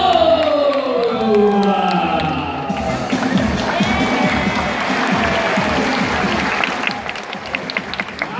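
Show music with gliding, falling tones, then an audience applauding and cheering from about three seconds in until near the end.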